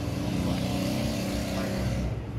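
Steady engine-like rumble with a low droning hum.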